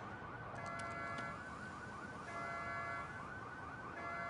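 Car alarm sounding after a crash: a fast warbling tone runs throughout, with steady beeping tones cutting in and out about every second and a half.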